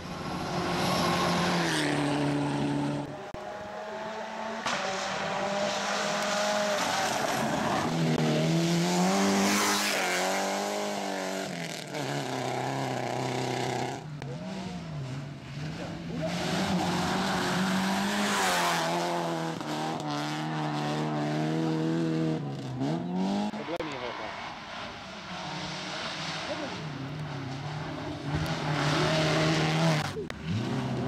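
Rally cars' engines revving hard on a gravel stage, the pitch climbing and then dropping again and again with gear changes as cars pass one after another.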